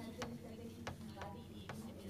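A few faint, irregular clicks, about four, over a low steady hum during a pause at a handheld microphone.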